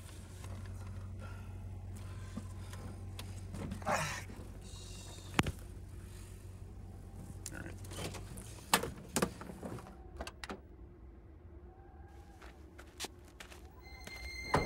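A convertible car's low, steady running hum with a few scattered thunks and clicks; the hum fades about two-thirds of the way through.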